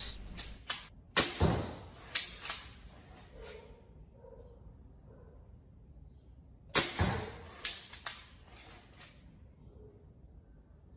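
A bow fitted with a self-loading arrow magazine shooting twice, about five and a half seconds apart. Each shot is a sharp snap, followed within about a second by a few lighter knocks. A few light clicks come before the first shot.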